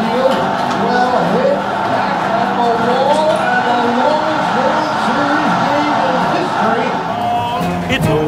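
A baseball broadcast announcer's excited play call over crowd noise, with background music.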